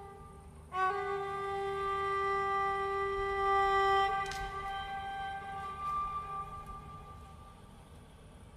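Solo Constantinopolitan lyra, bowed: after a brief pause, one long held note that softens about four seconds in and slowly fades away.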